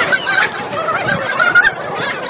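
Birds chattering and calling, many short overlapping calls.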